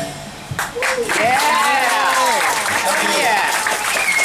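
A small audience applauding as the last guitar chord of a song fades out. The clapping starts about half a second in, with people's voices calling out over it.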